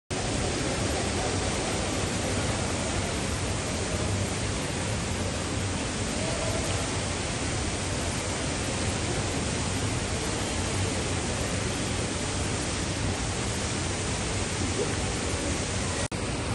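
Steady, even background noise of a large shopping-centre lobby: a continuous hiss-like hum with no distinct events.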